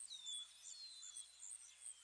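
Faint bird calls: short high-pitched chirps repeating throughout, with three brief whistles that fall in pitch, near the start, about three quarters of a second in, and near the end.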